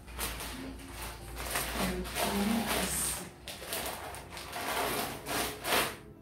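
A damp cloth rubbing over plastic grocery packaging, in irregular wiping strokes that come and go.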